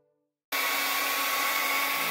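Handheld hair dryer blowing at a steady setting, an even rush of air with a steady hum, aimed at white cotton socks. It starts abruptly about half a second in.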